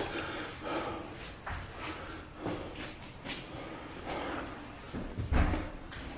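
Faint, irregular knocks and clicks, several over a few seconds, then a duller, louder thump about five seconds in.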